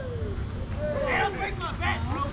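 People's voices calling out in short gliding shouts, over a steady low hum.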